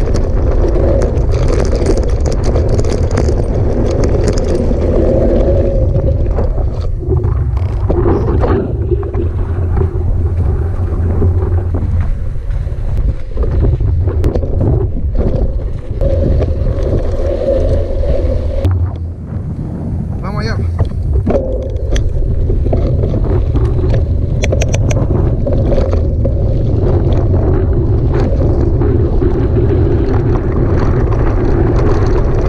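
Wind buffeting the handlebar-mounted camera's microphone over the rumble and rattle of a hardtail mountain bike rolling over a gravel track.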